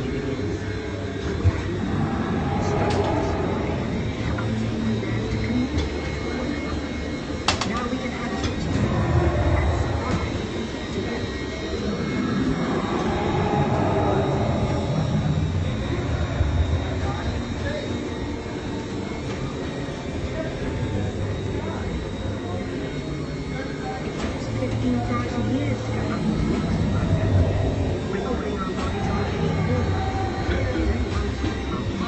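Steady low rumble of a Spaceship Earth ride vehicle moving slowly along its track through the dark ride, with indistinct voices over it and a couple of sharp clicks.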